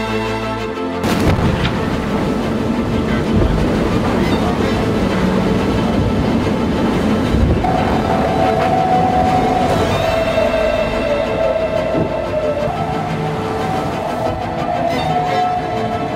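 Loud rushing of wind and water over an offshore racing yacht sailing hard in rough weather, mixed with music. A steady high tone joins about halfway through.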